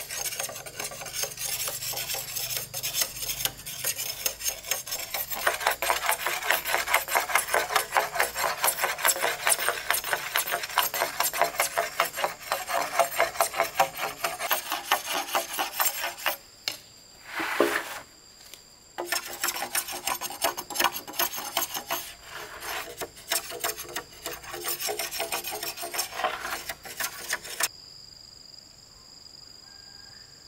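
A blade scraping rapidly back and forth along green bamboo poles, a quick run of rasping strokes with a brief pause about midway. Near the end it gives way to a steady high chirring of insects.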